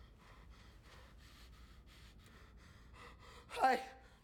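A quiet stretch with only faint low sounds, then near the end a man's short, loud gasping "oh" that falls in pitch.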